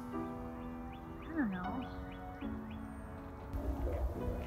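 Soft background music of held chords, the chord changing about two and a half seconds in. A brief gliding sound, falling then rising in pitch, is heard about a second and a half in.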